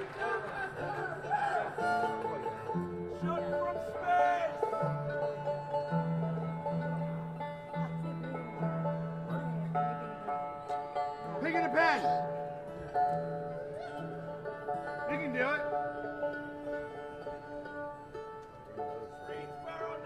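Bluegrass string band playing live, an upright bass stepping under a sustained melody with a few sliding notes.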